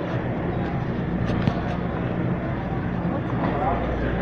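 Steady low hum of a supermarket freezer aisle, with the store's background noise and faint voices, and a few light clicks a little over a second in.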